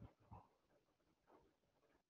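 Near silence: room tone, with a few faint, brief sounds in the first half second and one more about a second and a half in.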